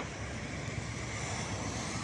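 Steady noise of road traffic, with cars passing.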